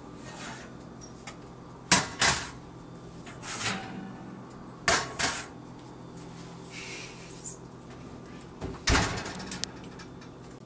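Oven-safe baking bowls of freshly baked bread being set down on an electric coil stovetop as they come out of the oven: sharp clanks in pairs about a third of a second apart, near two seconds, five seconds and nine seconds in.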